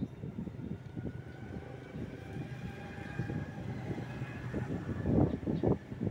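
Distant engine noise with a faint whine that rises slightly in pitch, over an uneven low rumble that gets louder near the end.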